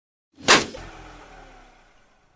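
A single sharp thud, a dubbed-in sound effect, with a ringing tail and a faint falling tone that fade out over about two seconds.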